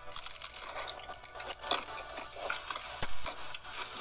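Biting into and chewing a thin, crispy-crusted Pizza Hut Buffalo Chicken Melt, with irregular crunching and mouth sounds. A steady high-pitched hiss runs underneath.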